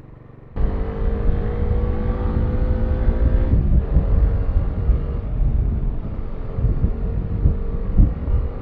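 Motorcycle engine, the Kawasaki Dominar 400's single-cylinder, running under way with heavy wind rumble on the microphone. The sound starts abruptly about half a second in, the engine note climbs gently, then changes about three and a half seconds in.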